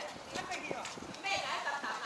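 Other people talking in the background, with a few light knocks like steps on a hard surface.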